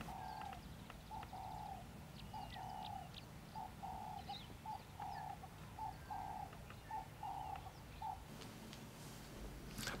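A dove cooing: a steady run of low hooting notes, short and longer in turn, repeated through most of the stretch and stopping near the end. Faint chirps of other birds sit above it.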